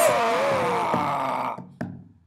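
A drawn-out, wavering wail that slides down in pitch, over background music. As it fades, a couple of short knocks follow near the end.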